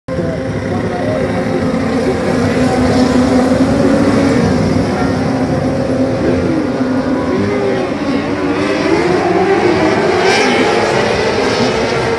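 A pack of Formula 500 speedway cars racing on a dirt oval, several engines running hard at once with their pitch rising and falling through the corners.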